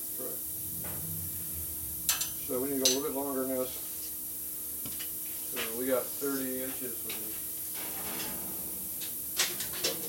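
A few sharp light metal clicks and clinks, with two short stretches of a man's voice, over a steady hiss and faint hum.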